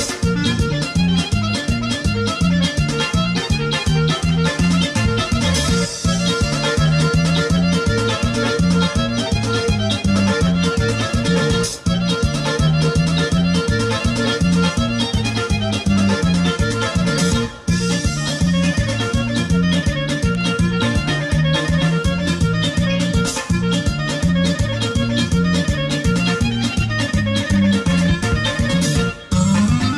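Instrumental Bulgarian folk dance music with accordion and fiddle over a steady, fast, even beat.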